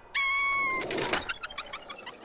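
Cartoon sound effect: a short, steady whistle-like tone held for over half a second, followed by a quick run of fading, echoing notes.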